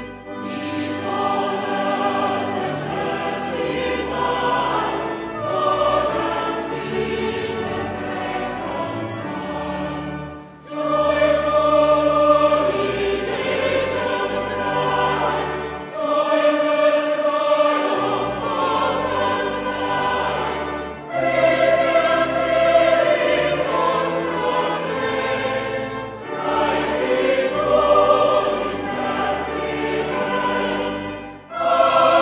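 A choir singing a Christmas carol in sustained chords, its phrases separated by short breaks.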